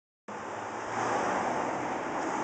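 Steady rushing outdoor background noise, a broad even hiss that cuts in abruptly just after the start and swells slightly within the first second.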